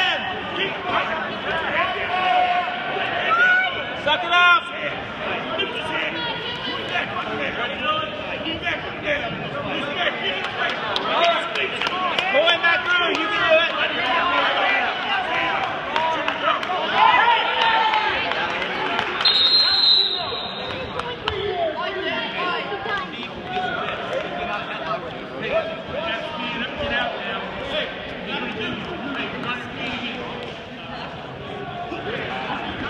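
Coaches and spectators shouting and talking over one another in a gymnasium, with occasional thuds of wrestlers on the mat. A short high tone sounds about two-thirds of the way through.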